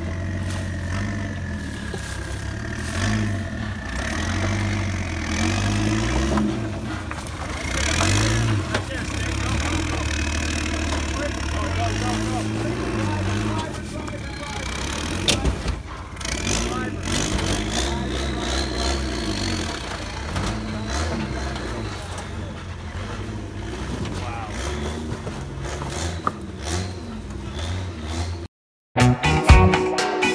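Jeep Cherokee XJ engine working at low speed and changing pitch as the lifted Jeep crawls over rocks, with a few sharp knocks around the middle. People's voices are heard along with it.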